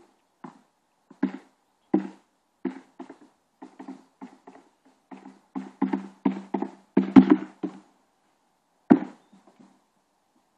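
Sword-and-shield sparring blows: a quick, irregular run of knocks, each with a short ringing tone. They come fastest about six to eight seconds in, with one hard blow near nine seconds.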